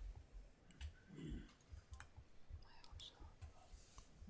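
Near silence in a council chamber, broken by faint scattered clicks and light knocks of desk and microphone handling. A brief faint murmur of a voice comes about a second in.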